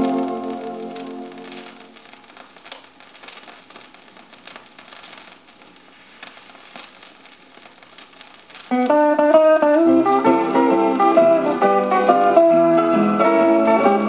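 Gospel music played from a vinyl LP, fading out at the end of a track. Then comes about six seconds of quiet record surface noise, a faint hiss with scattered clicks and crackles from the groove between tracks. The next song starts suddenly near the nine-second mark.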